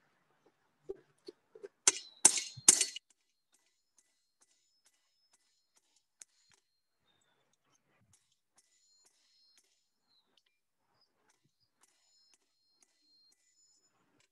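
Three loud hammer blows on hot steel over the anvil about two to three seconds in, each with a brief metallic ring, after a few softer knocks. They come as the blacksmith wraps the steel around a pin to form a hinge knuckle. After that, near silence with faint scattered clicks.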